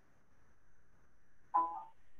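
Quiet room tone over a video-call line, then a brief single vocal sound from a man near the end.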